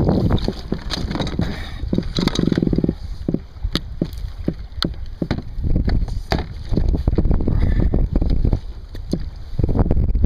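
Clicks and knocks of rope, rod and reel being handled aboard a fishing kayak, over a heavy low rumble, with a short buzzing rattle about two seconds in.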